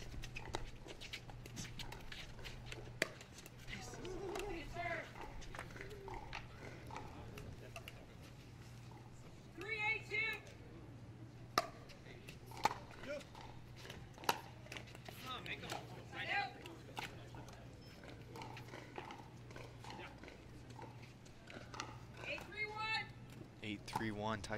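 Scattered sharp knocks of a plastic pickleball and paddles on an outdoor court, with short voices calling out twice, under a steady low hum.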